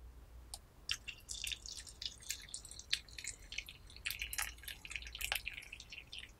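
Hot water poured in a thin stream from a kettle spout into a small Yixing clay teapot packed with wet puer leaves. It splashes and patters in quick, irregular drips that begin about half a second in and grow denser as the pot fills.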